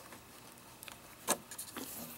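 Faint handling noise of wires being pulled through a hole in a plastic drone airframe: a few light clicks and taps, the sharpest a little past halfway, over quiet room tone.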